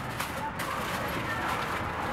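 Steady open-air street background noise with faint, indistinct voices.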